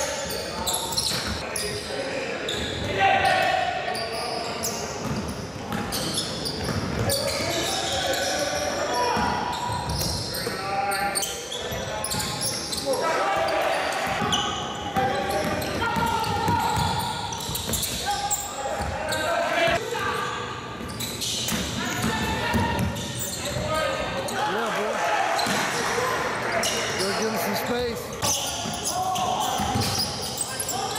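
A basketball bouncing on a gym floor during play, with scattered voices of players and onlookers ringing in the large hall.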